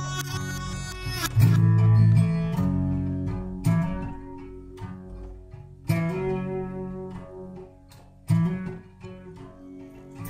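Slow guitar intro of a folk-rock song: picked chords struck about every one to two seconds and left to ring out and fade, over low bass notes.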